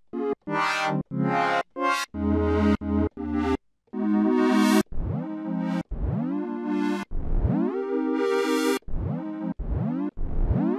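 Synthesizer sounds from a Maschine sampler kit played one after another: a run of short pitched stabs in the first few seconds, then longer notes about a second apart, each starting with a rising pitch sweep.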